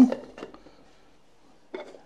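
Plastic lids being handled on an electric yoghurt maker: a faint click about half a second in and a short plastic clack near the end.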